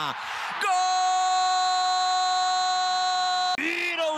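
A TV football commentator's long goal shout, "Gooool", held on one steady note for about three seconds and then cut off abruptly. Just before it there is a short burst of crowd cheering.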